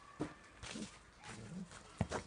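A Samoyed making a few short, low vocal sounds as it noses and pushes a football around in the snow.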